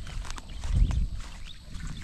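Wind buffeting a phone microphone outdoors: low rumbling gusts, the strongest about three-quarters of a second in, with a few faint clicks.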